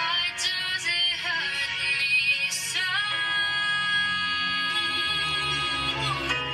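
A woman singing a slow pop ballad with soft accompaniment: quick vocal runs, then a long held note from about three seconds in.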